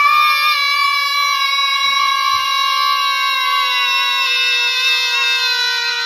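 Children holding one long, loud yell on a single high pitch that sags slightly toward the end.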